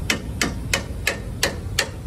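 Sharp metallic clicks, evenly spaced at about three a second, from hand-tool work on a car's front suspension during a shock absorber fitting.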